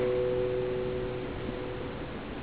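Classical guitar notes left ringing after a plucked chord, fading away over about a second and a half until only faint hall hiss remains.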